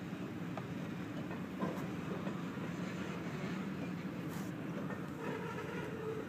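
Freight train of boxcars rolling past, a steady rumble of steel wheels on rail with a few faint clicks, heard from inside a car.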